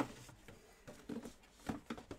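Quiet small-room tone, with one sharp click at the start and a few faint short handling noises after it.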